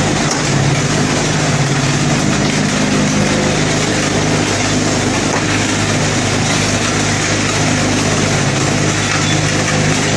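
Vibrating table for concrete tile moulds running with a steady, loud mechanical hum and rattle.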